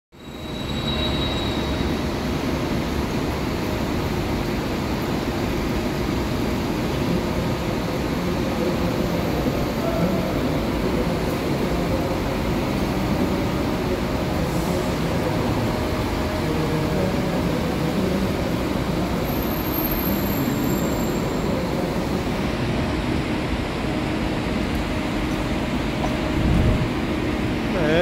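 Steady diesel rumble of a double-decker intercity coach manoeuvring under the roof of a bus terminal, mixed with the terminal's constant echoing background noise; it swells briefly near the end.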